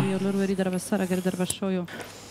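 Speech: a voice over the hall's sound system in three drawn-out stretches, the last falling in pitch and trailing off about two seconds in.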